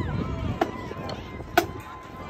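Marching drum line: two sharp drumstick strikes about a second apart, the second louder, after a passage of loud drumming.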